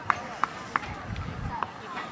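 Faint, indistinct voices of players and onlookers on an open cricket ground, with a handful of short, sharp, high sounds scattered through it.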